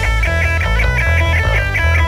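Thrash metal recording in an instrumental break: electric guitar plays a fast, repeating high riff of about five notes a second over the bass, with no vocals or cymbals.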